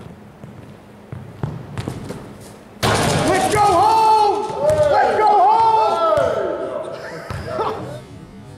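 Basketball bouncing and knocking on a hardwood gym floor, then about three seconds in a sudden loud burst of excited shouting and yelling from the players, echoing in the large gym.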